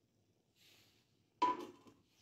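Mostly quiet, then a single short knock with a brief ring about one and a half seconds in, a kitchen utensil striking against the cookware while fresh cream is added to thickening milk.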